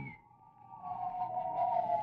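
A radio sound effect for someone shrinking: a gliding tone that slowly falls in pitch, starting about half a second in and growing louder as it descends.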